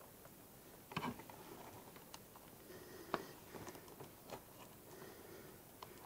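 Faint handling noise from the plastic case and parts of a radio-control transmitter being worked on by hand. A few small scattered clicks stand out, the sharpest about three seconds in.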